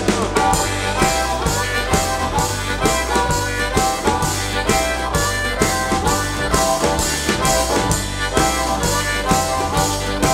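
Harmonica played into a vocal microphone, taking the lead over a live acoustic band: acoustic guitar, upright double bass and a snare drum keeping a steady, driving beat.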